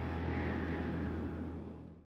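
A low, steady rumble with a faint hiss, fading out toward the end: the dying tail of the promo's background music.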